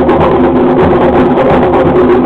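Loud traditional procession music: drums beating a fast, dense rhythm over steady held notes from a wind instrument.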